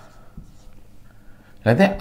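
Marker pen writing on a whiteboard: a faint scratching as numerals are drawn. A man's voice starts near the end.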